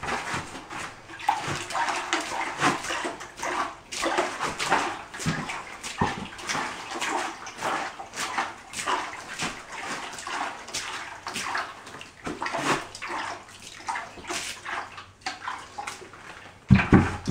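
Water poured from a bucket onto dry sand-and-cement deck mud in a plastic mortar tub, splashing unevenly as it lands.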